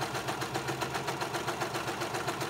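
Brother serger (overlock machine) running at speed while finishing a fabric seam, a steady fast mechanical clatter with an even rhythm.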